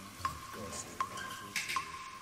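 Recorded sound effect of a tap dripping into a sink, played back over the PA. It gives an even run of ringing plinks, about one drop every three-quarters of a second, with a brief hiss near the end.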